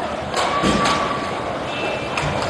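Roller hockey rink sound during play: a steady wash of noise from inline skates on the rink floor, with a few sharp stick-and-puck knocks in the first second and a faint thin tone briefly near the middle.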